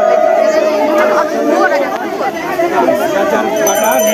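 Crowd chatter, with a voice chanting a Sanskrit devotional mantra to the goddess in long held notes, one drawn out for nearly two seconds and another beginning near the end.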